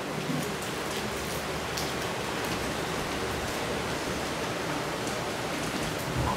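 Steady, even hiss of classroom room noise, with a few faint light taps of chalk writing on a blackboard.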